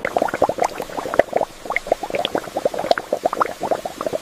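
Water bubbling, a dense run of small irregular pops and blips like a pot at the boil.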